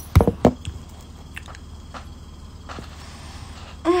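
Handling noise on a hand-held phone's microphone: a few low bumps in the first half second, then quiet room tone with a low hum and faint ticks. Near the end comes a woman's voiced sigh with a falling pitch.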